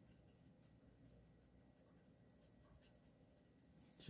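Very faint strokes of a black felt-tip marker on paper, short light scratches scattered over a near-silent room tone.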